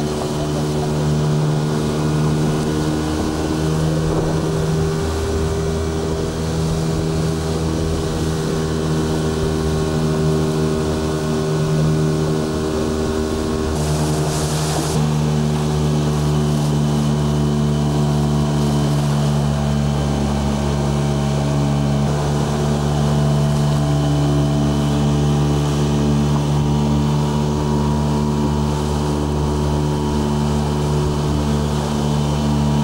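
Outboard motor on a small open boat running steadily at speed, with wind and rushing water. About halfway through there is a brief burst of noise where the recording cuts, and the motor's note changes slightly after it.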